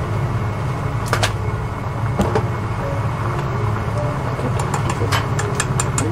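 A pan of taro in broth at a rolling boil, over a steady low hum, with light metal clicks and clinks as tongs handle and lift off a perforated metal drop lid: a couple about a second in, one at about two seconds, and a quick cluster near the end.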